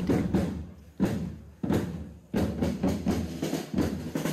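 Parade drums: several loud strikes about a second apart, each dying away before the next.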